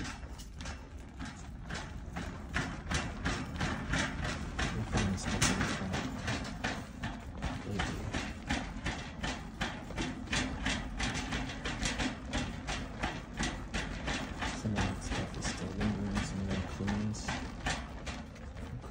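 Wire shopping cart being pushed along a store aisle: its wheels rumble steadily with a fast, even run of clacks, about four a second.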